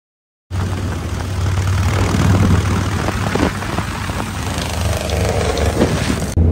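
V-twin chopper motorcycle riding on the road, its engine running steadily with a low hum and broad road noise over it; the sound starts abruptly about half a second in.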